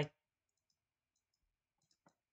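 Near silence with a few very faint clicks from the pen or stylus while handwriting is drawn on a digital whiteboard.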